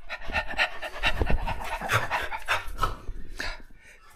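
Rapid, rhythmic panting breaths, several a second.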